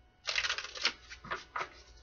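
A deck of tarot cards being shuffled by hand: a quick run of crackling card flicks lasting about half a second, then a few separate snaps of cards.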